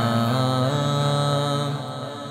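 Devotional vocal music: low male voices holding a sustained chant-like drone between sung lines. The pitch steps up about two-thirds of a second in, and the voices drop away near the end.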